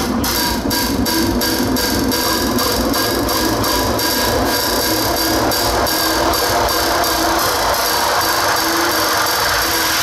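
Loud electronic music played through outdoor PA speakers: a fast, even beat over sustained droning synth tones, the beat fading out after about four seconds while the drone carries on.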